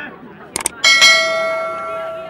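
Subscribe-button overlay sound effect: two quick clicks about half a second in, then a bright bell ding that rings on and slowly fades.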